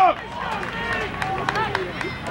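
Scattered, fairly distant voices of players and spectators calling out on an open field, after a close man's voice cuts off right at the start.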